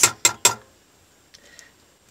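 Three sharp clinks in quick succession, a utensil knocking against the stainless steel cooking pot, then quiet with a couple of faint ticks.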